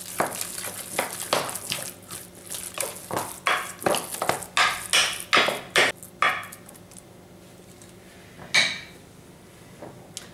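A wooden spoon knocking and scraping against a mixing bowl as minced meat is stirred, about two to three knocks a second, stopping about six and a half seconds in. A single knock follows about two seconds later.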